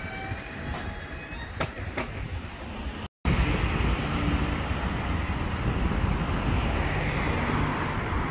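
Street traffic: cars driving past on a town road, a steady rumble that swells near the end as a car passes close. Before it, for about three seconds, there is a lower rumble with a few faint, thin high tones and two sharp clicks, cut off suddenly.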